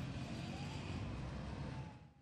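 Street traffic: minibus and motorcycle engines running as they pass, a steady low rumble with a faint engine whine that glides up and then down. It cuts off abruptly at the end.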